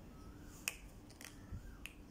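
A sharp plastic click as the cap of a glue stick is snapped back on, a little after the start, followed by a lighter click near the end.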